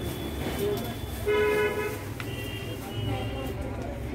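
Background murmur of voices over a low rumble, with a short, loud horn-like toot about a second and a half in and a fainter high-pitched tone just after.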